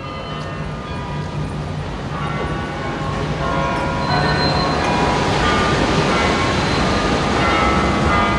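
Street traffic rumbling past, growing steadily louder over several seconds, with scattered short higher tones over a heavy low rumble.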